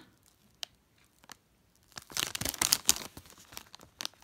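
Clear plastic bag crinkling around a plastic model-kit sprue as it is handled and turned over. A few faint crackles come first, then a loud burst of crinkling about two seconds in that lasts around a second.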